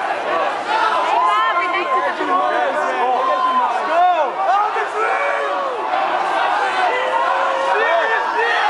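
Concert crowd shouting and yelling, many voices over each other at a steady loud level: the audience making noise to vote for a beer it thinks is good.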